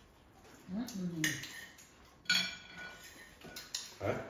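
Eating utensils clinking against dishes as people eat. There are a few sharp clinks with a short ring, the loudest about two and a half seconds in.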